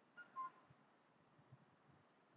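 Near silence: room tone, with one brief faint high-pitched chirp a few tenths of a second in.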